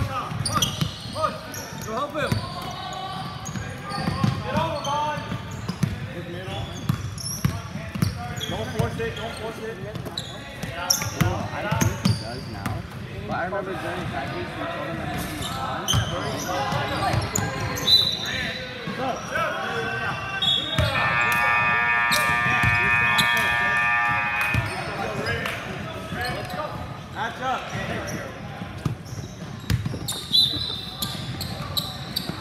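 Basketball dribbled and bouncing on a hardwood gym floor during play, with indistinct players' and spectators' voices echoing in a large hall. About two-thirds of the way through, a steady tone holds for about four seconds.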